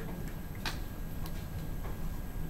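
A few short, irregular clicks, one clearer than the rest, over a steady low hum of room noise.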